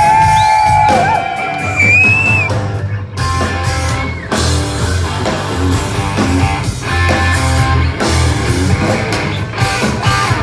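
Live rock band playing loud through a PA, with electric guitars, bass and drums keeping a steady beat. A long held note at the start bends upward about two seconds in.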